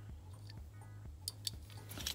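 A few small clicks and taps of a die-cast Hot Wheels Bone Shaker toy car being handled in the fingers, mostly in the second half, over a low steady hum.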